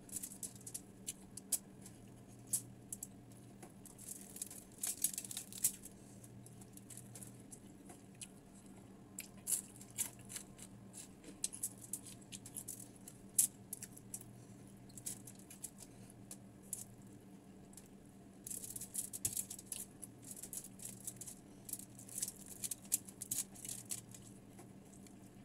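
Close-up eating sounds: chewing and crunching crispy fried tilapia, with fingers picking at the fish, giving irregular clusters of sharp little crackles. A low steady hum runs underneath.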